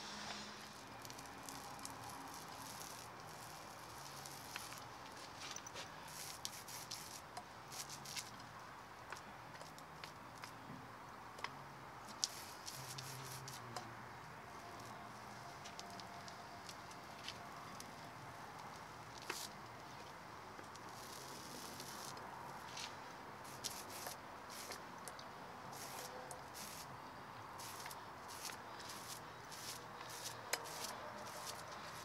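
Small paint roller working wet bitumen blacking onto a steel narrowboat hull: a faint, sticky crackle of many small irregular clicks and squishes as the roller passes back and forth.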